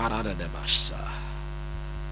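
Steady low electrical mains hum through the microphone and sound system. There is a brief voiced murmur at the very start and a short hiss a little under a second in.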